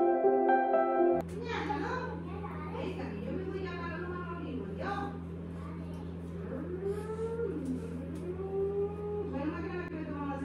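Background music cuts off about a second in. After that a small child's voice is heard in the background, talking and calling out while playing with his grandmother, over a steady low hum.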